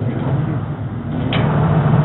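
Gas dryer running with a steady low hum, with one sharp click about two-thirds of the way through, after which the hum grows louder. The click is taken as the sign that power is reaching everything in the gas burner circuit.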